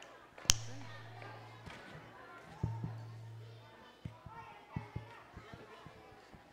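Handheld microphones being handled through a PA: a sharp click, then a steady low electrical hum that comes on twice for about a second each, followed by a run of dull thumps and knocks, under faint voices.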